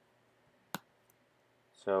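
A single sharp computer mouse click about three quarters of a second in, followed by a faint tick, as text is selected on screen; a man's voice starts speaking near the end.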